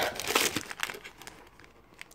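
Plastic-sleeved card packaging crinkling and rustling as it is handled and lifted out of a cardboard box. The crinkling is busiest in the first second, then dies away.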